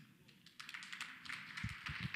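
Faint audience applause that begins about half a second in and slowly swells.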